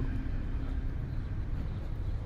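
A steady low rumble, with nothing standing out above it.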